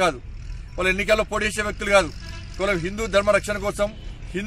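A man speaking Telugu, with short pauses between phrases, over a low steady rumble.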